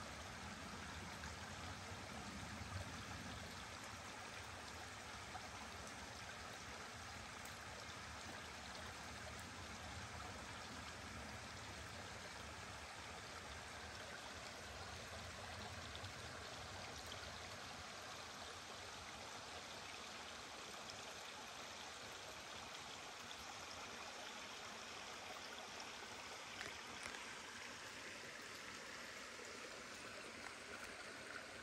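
Small creek running: a faint, steady rush of water.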